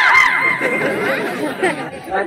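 Audience chatter, many voices at once, with a steady high-pitched tone sounding over it for about the first second.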